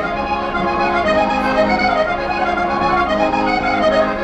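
Accordion-led Portuguese folk band playing a chula, a steady, continuous tune with sustained chords.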